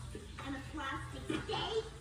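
Speech only: a woman's voice delivering a cartoon character's lines, played through a television speaker in a small room.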